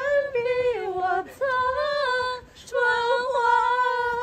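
Unaccompanied singing in a high voice: long held notes, breaking off briefly about a second in and again past the halfway mark.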